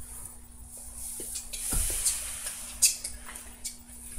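A person falling over: rustling and scuffing, a dull thump a little before the middle, and a sharp knock about three seconds in.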